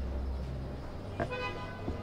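A vehicle horn gives one short toot a little over a second in, over a steady low background hum.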